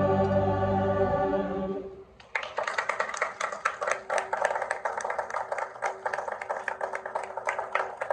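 Amateur mixed choir holding its final chord, which cuts off just under two seconds in; applause starts a moment later and goes on.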